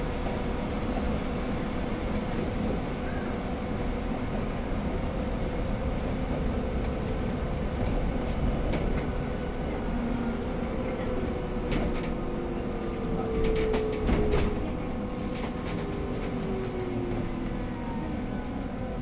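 Cabin noise inside a moving battery-electric city bus: a steady low rumble with the electric drive's whine, which glides down in pitch over the last several seconds as the bus slows. A cluster of rattles and knocks comes about two-thirds of the way through.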